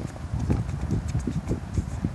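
Sneakers running on a hard tennis court while a soccer ball is dribbled: a rhythmic run of thuds about four a second, with a sharper knock at the start.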